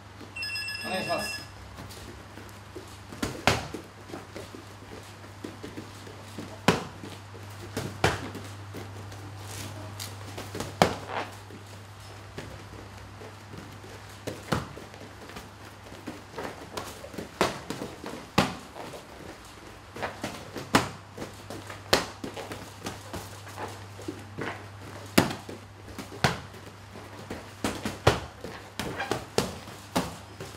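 A gym round timer beeps rapidly for about a second, marking the start of a round. Then punches and kicks land on focus mitts with sharp smacks every one to three seconds, sometimes in quick clusters of two or three.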